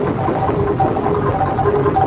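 Jaranan accompaniment music with short pitched gamelan notes alternating quickly between a low and a high note over a dense, steady low rumble of drums and ensemble.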